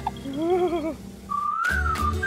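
A short warbling, wavering cartoon sound, then a whistled tune that rises and falls over a deep bass as a cartoon theme jingle begins.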